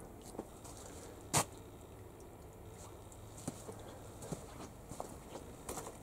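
Faint footsteps on wet gravel with a few light ticks, and one sharp click about a second and a half in.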